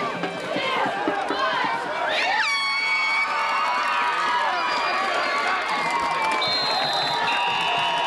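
Football spectators shouting and cheering over a play, with a high, held horn-like tone joining about two and a half seconds in.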